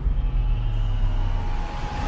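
Deep, steady rumble of a cinematic logo-intro sound effect, with faint sustained tones held above it, one coming in about a second in.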